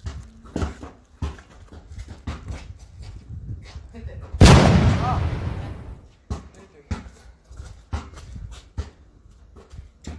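Basketball dribbled on a concrete driveway: a run of sharp bounces about twice a second, broken about four and a half seconds in by one much louder crashing hit that dies away over a second or so.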